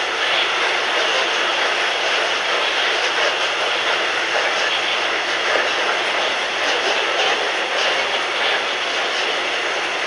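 Container wagons of a long freight train rolling past on steel wheels, a steady rolling noise on the rails.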